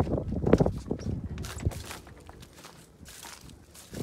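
Footsteps on dry straw stubble as a person steps down from a tractor cab and walks across the field: irregular knocks and scuffs, loudest in the first second and a half, then softer.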